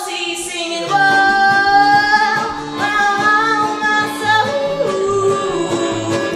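Live female singing with no clear words, a long held note over strummed acoustic guitar and accordion, dropping to lower notes near the end.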